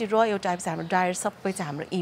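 A woman speaking, a steady run of conversational talk.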